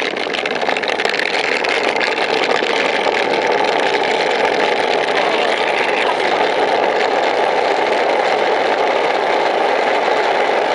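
Steel ball-bearing wheels of rolimã carts rolling down an asphalt slope: a loud, steady, gritty roar that builds over the first second and then holds.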